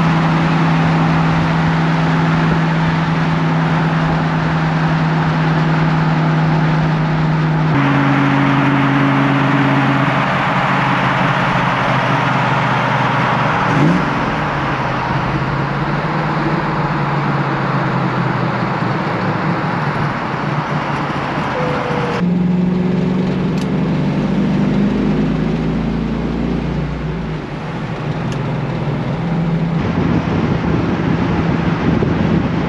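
Cars driving at highway speed: a steady engine drone under wind and road noise. The sound changes abruptly about eight and about twenty-two seconds in.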